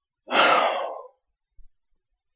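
A man's sigh: one breathy exhale of under a second that fades out.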